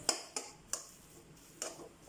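Metal spatula striking and scraping a metal kadai while stirring shredded porotta, heard as a few sharp clicks at uneven spacing.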